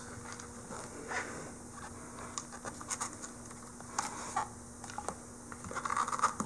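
Faint scratches and light clicks of hands handling a sealed lead-acid battery's plastic case, strap and terminal cap, growing busier near the end, over a low steady hum.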